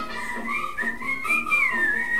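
A person whistling a clear, high tune that slides up and down, over background music.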